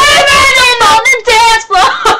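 A child singing loudly in a high voice, with held notes that waver in pitch.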